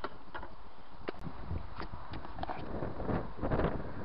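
Wind rumbling on the microphone, with a few light scattered knocks.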